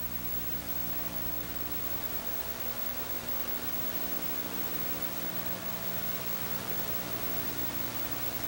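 Steady hiss with a constant low electrical hum and its overtones: background noise of an old recording, with no programme sound on it.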